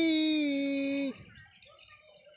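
A man singing one long, steady held note, which stops about a second in; the rest is faint background sound.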